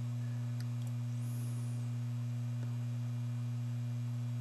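Steady low electrical hum: one low tone with a fainter one an octave above, unchanging throughout.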